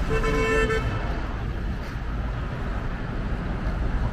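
A vehicle horn gives one short toot, under a second long, at the start. Steady street traffic rumble runs underneath.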